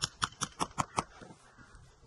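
Steel hammer striking the spine of a Damascus-steel knife, driving the blade into a frozen chicken. A quick run of about six sharp knocks in the first second, then the strikes stop.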